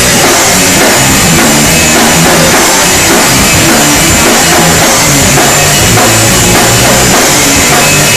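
A live rock band playing loud, with a drum kit and cymbals driving the beat under electric guitars.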